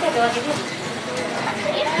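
Background chatter of people talking, with paper coupons rustling as a hand rummages through a crate full of them.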